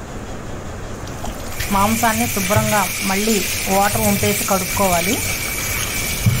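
A steady hiss with a thin high whistle in it starts suddenly about a second and a half in and runs on under a woman's speech.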